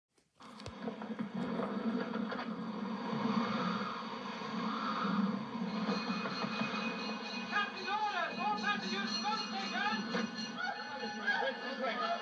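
A film soundtrack playing from a television speaker: music over a steady rushing noise, with voices calling out from about seven and a half seconds in.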